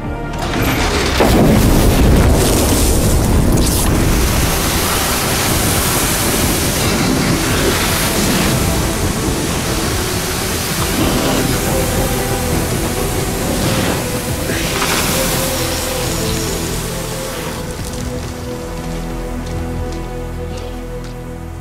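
A fireball explosion bursts from a box truck's burning cargo hold about a second in, followed by a long rushing, rumbling roar that slowly dies away. A dramatic music score plays underneath.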